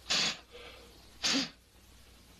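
Two short puffs of breath, about a second apart, blowing loose fingerprint powder off a glass plate.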